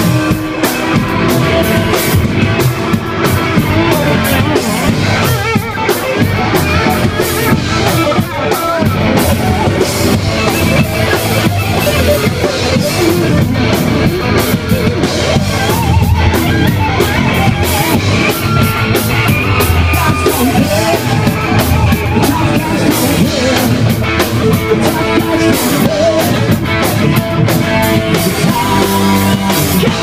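A live rock band playing loud, driving music with a full drum kit and electric guitars, steady throughout with no pause.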